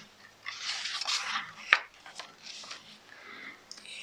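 Paper rustling as a page of a picture book is turned by hand, with a sharp tap a little before the middle and lighter rustles after it.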